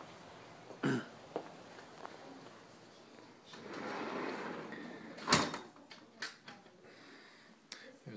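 A sliding glass patio door rolling along its track with a rising rush, then shutting with a loud knock a little after five seconds, followed by a few lighter knocks.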